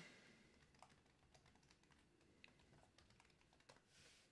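Near silence with a few faint, scattered clicks of computer keys being pressed.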